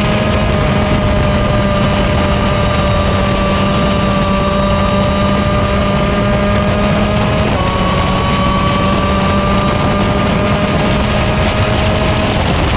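125cc KZ shifter kart's two-stroke single-cylinder engine running hard at a near-steady high pitch, heard on board with wind rush over the microphone. About seven and a half seconds in the pitch dips slightly and then climbs again.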